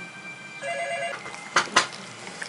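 A telephone ringing once for about half a second with a steady electronic tone, followed near the end by two sharp knocks in quick succession.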